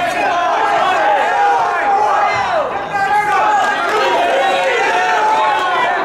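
Several voices shouting and calling over one another without a break, the way coaches and spectators yell from the side of a wrestling mat.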